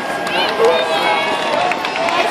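Roadside crowd of spectators calling out and cheering, several voices overlapping over a steady murmur.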